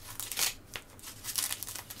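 Plastic packaging wrap around a speaker crinkling as hands pick at it to get it open, in two short rustles.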